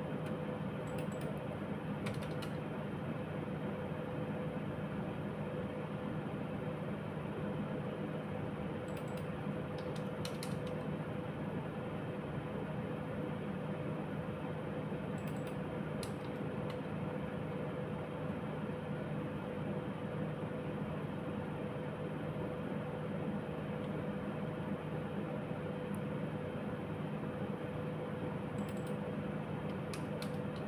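Steady electrical hum and hiss with a few faint, scattered clicks of a computer keyboard and mouse as values are typed in.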